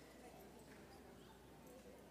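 Near silence in a large hall: faint room murmur of voices with a few soft taps.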